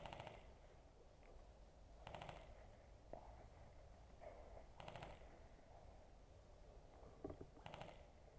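Faint short bursts of rapid, evenly spaced clicks, four times, typical of distant airsoft rifles firing in bursts, over near silence.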